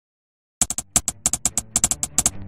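Typing sound effect: silence, then about half a second in a quick, irregular run of about a dozen sharp keyboard-like key clicks, timed to a caption being typed out on screen.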